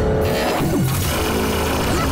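Dramatic cartoon action score mixed with a loud, noisy sound effect, and a short falling tone about halfway through.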